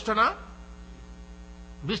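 Steady electrical mains hum from the microphone and sound system, left bare in a pause between a man's words; his voice trails off a fraction of a second in and comes back near the end.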